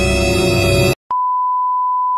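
Background music that cuts off abruptly about a second in. After a click, a steady high-pitched test-tone beep follows, the reference tone that goes with TV colour bars, used here as a 'technical difficulties' edit.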